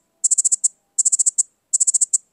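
Nothing Ear (stick) right earbud ringing from the Find My Earbuds feature: three bursts of rapid, high-pitched beeping chirps, about one burst every three-quarters of a second.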